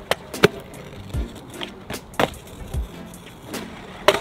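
Kick scooter being ridden and thrown into tricks on asphalt: a series of sharp clacks and knocks as the deck and wheels hit the ground on landings, with short stretches of wheels rolling.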